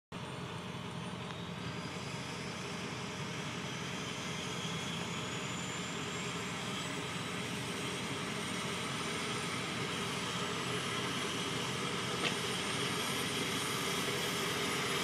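Medical helicopter's turbine engines winding up on the pad, a steady rushing whine that slowly rises in pitch and grows louder as the rotor turns.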